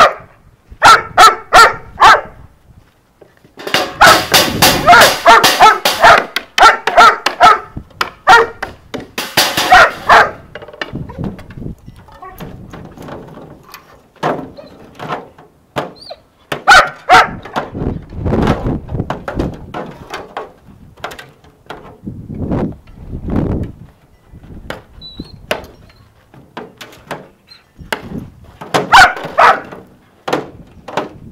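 German Shepherd barking in quick bursts, with a long stretch of near-continuous barking a few seconds in and scattered barks later, as a dog being worked up in bite training. Occasional thuds are mixed in.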